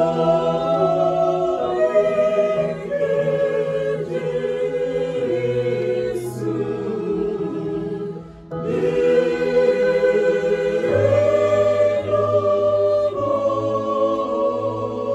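Small mixed choir singing a slow hymn in Igbo in sustained chords, pausing briefly between phrases about eight seconds in.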